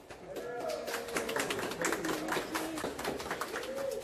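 Audience applause, many hands clapping at once right after the orchestra's last note has died away, with voices calling out and cheering over the claps.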